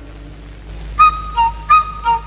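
Background music cue: after a near-quiet first second, three short, clear, high notes alternating between two pitches, high, low, high, like a comic sting.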